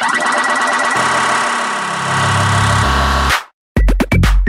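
Tech house music from a DJ mix: dense layered synths build up over a swelling bass, then cut out to a brief silence about three and a half seconds in. The kick drum comes back in a steady four-on-the-floor beat near the end.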